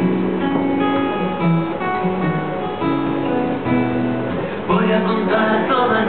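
Acoustic guitar strumming chords in a steady rhythm. A man's singing voice comes in over the guitar near the end.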